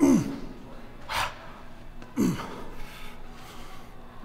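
A man's strained grunts and forceful breaths while pressing heavy dumbbells close to failure. There is a falling grunt at the start, a sharp exhale about a second in, and another falling grunt just after two seconds.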